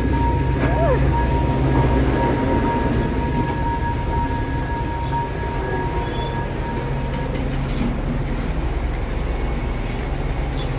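Diesel light-rail train running past close by as it pulls into the station: a steady low engine drone under two steady high whining tones, which stop about three-quarters of the way through.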